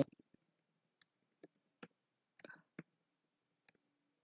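Faint, unevenly spaced computer keyboard keystrokes, a handful of separate key clicks as a short command is typed and entered.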